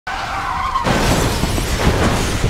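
Car tyres screeching in a wavering high squeal, cut off under a second in by a sudden crash that goes on as a dense rush of noise.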